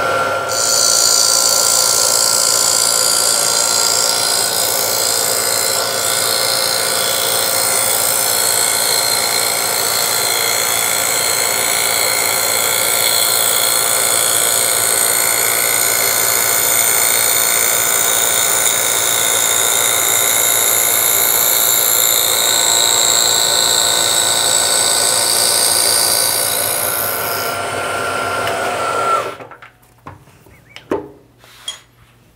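Milling machine cutting a groove in a wooden tool handle with a three-quarter-inch end mill ground to a file's angle. The spindle runs steadily with a whine while the cutter chews through the wood. The cutting hiss stops near the end, and the machine cuts off just before the end.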